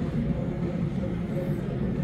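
Slot machines playing short electronic tones and jingles over a steady murmur of voices and hall rumble.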